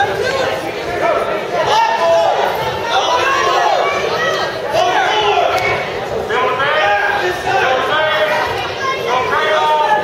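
Spectators and coaches in a gymnasium shouting and talking over one another during a wrestling bout, several voices at once.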